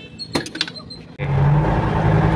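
A few faint clicks, then about a second in a tractor-trailer's engine and road noise start abruptly, a loud steady low drone as the truck drives.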